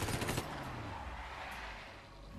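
Action-film soundtrack: a short burst of rapid-fire gunshots in the first half-second, then a low steady rumble under a hiss that fades toward the end.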